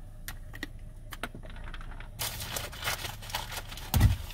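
Light, irregular clicks and taps of an ostrich's beak pecking at the inside of a car door and at an object held in a hand. The taps are sparse at first and come thicker from about halfway through.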